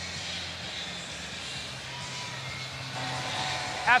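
Steady murmur of a large stadium crowd, a low even rumble with no single voice standing out. A man's voice over the stadium loudspeaker begins right at the end.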